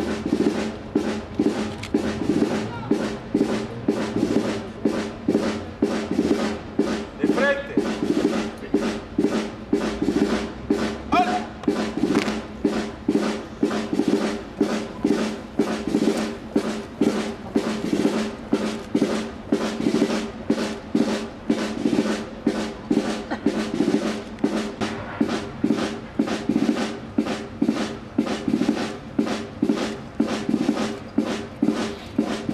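A military march with a steady drum beat, about two beats a second, keeping time for troops marching in step.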